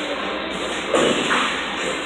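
Bowling ball reaching the far end of the lane and knocking into the pins with a thud and clatter about a second in, over the steady din of a busy bowling alley.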